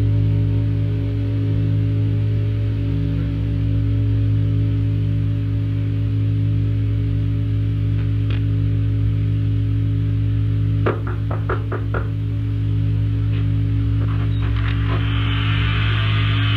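Ambient drone music: a steady low hum with several held tones above it. A quick run of about five clicks comes around eleven seconds in, and a hiss swells up near the end.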